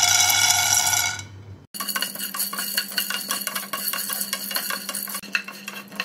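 Dried chickpeas poured from a steel measuring cup into a non-stick pan, a dense rattle lasting about a second and a half. After a sudden break, a spatula stirs them around the pan in a run of quick clicks and rattles over a low steady hum.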